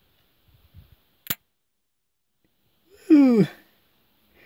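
Mostly quiet, with one sharp click about a second in and a short wordless voice sound falling in pitch near the end.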